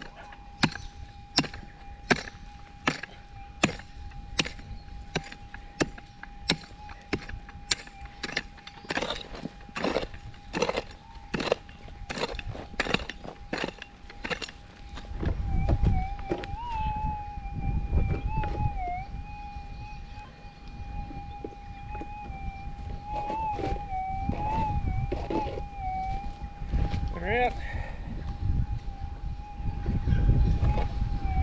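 Minelab GPX 6000 metal detector playing its steady threshold hum through its speaker, while a pick strikes repeatedly into gravelly soil about one and a half times a second for the first half. The strikes stop midway, and as the coil is swept over the hole the detector's tone wavers up and down several times in response to the target.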